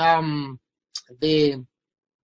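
Speech only: a man speaking in two short phrases over an online voice-chat line, then cutting off into dead digital silence.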